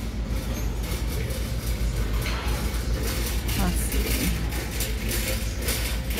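Store background noise: a steady low rumble with scattered light knocks and a faint voice in the distance.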